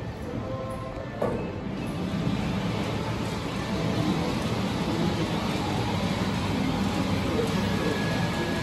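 Mitsubishi elevator starting upward with a bump about a second in, then a steady running noise from the car that grows louder as it climbs from the first floor toward the second.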